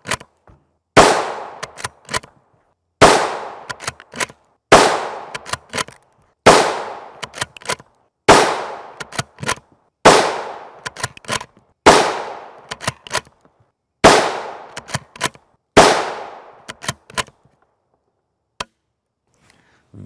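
A 5.56 NATO rifle with a 22-inch barrel fires nine shots of PPU M193 55-grain FMJ at a steady pace, about two seconds apart. Each sharp report trails off in a short echo, with a few small clicks between shots. The rounds are leaving the muzzle at around 3,270–3,290 feet per second.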